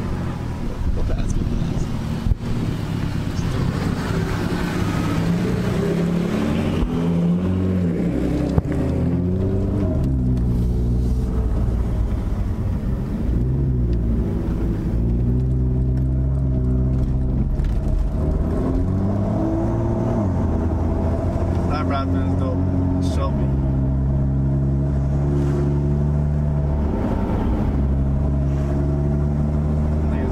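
BMW M2 engine and road noise heard from inside the cabin while driving, the engine note holding steady for a few seconds at a time, then rising and falling several times with throttle and gear changes.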